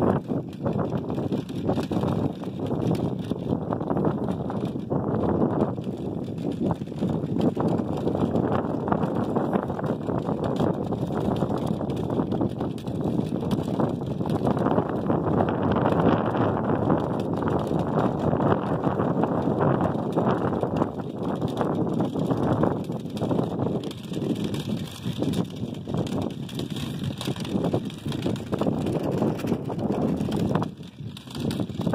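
Measuring wheel rolling along rough asphalt: a continuous rolling rumble with many small clicks and rattles.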